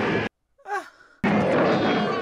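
A film's soundtrack of music and sound effects that cuts off suddenly about a quarter second in. In the gap a short, faint falling sigh-like sound is heard, then the loud soundtrack returns abruptly about a second later.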